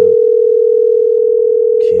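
Telephone ringback tone on an outgoing call: one loud, steady ring lasting about two seconds while the call waits to be answered.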